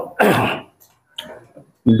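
A man clears his throat once, a short rasping burst near the start, in a pause in his speech.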